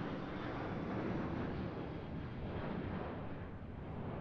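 Wind on the microphone: a steady rushing noise that swells and eases slightly.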